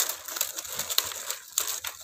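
Stiff plastic strapping strips crinkling and crackling as they are handled, pulled and tucked through a woven tray, in a quick irregular run of small rustles.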